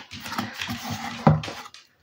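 Cardboard mailer box lid being lifted open and handled, a dry scraping and rustling of card, with a brief louder low sound a little past a second in.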